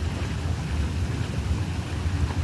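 Hot tub jets churning the water: a steady rush of bubbling water over a low rumble.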